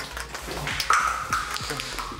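An aerosol spray can of temporary hair colour hissing for about a second, with a thin whistle in the hiss, among a few light clicks.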